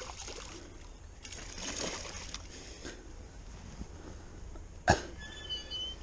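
Hooked pike splashing and thrashing at the water's surface. A single sharp knock comes near the end.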